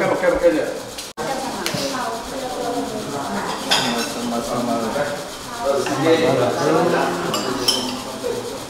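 Serving spoons and plates clinking against metal trays and ceramic bowls as food is scooped at a buffet, a few sharp clinks standing out over voices in the room.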